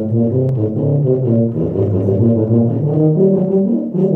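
Tuba playing a quick passage of low notes, several notes a second, each with a full, rich tone.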